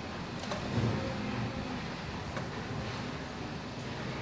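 Steady background hum with a few faint, short clicks of a screwdriver working the screw terminals of a push-button switch.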